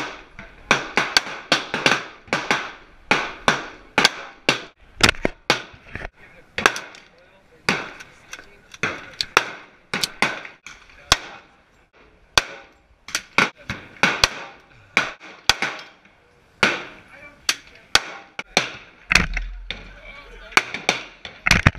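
Gunshots from several firearms, pistol and rifle among them: sharp reports at irregular intervals, about one or two a second and of varying loudness, each trailed by a short echo.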